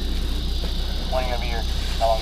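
Crickets chirping in a steady chorus over a low, steady hum, with a short burst of a man's voice about a second in.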